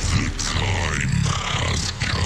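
Electronic bass music from a DJ mix: the track switches right at the start from sustained chords to a dense, distorted section with sweeping, vocal-like sounds over a heavy bass.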